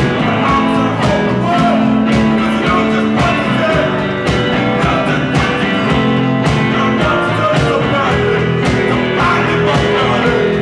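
Live rock band playing a song on stage, electric bass and drums carrying a steady beat under the other parts.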